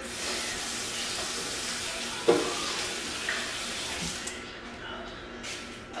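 Kitchen sink tap running as hands are washed under it, a steady rush of water that stops a little after four seconds in. A brief knock sounds about two seconds in.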